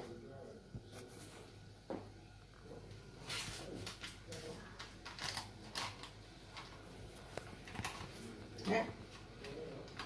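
Faint clicks and scrapes of a knife cutting a cake on a plate, with quiet voices in the room.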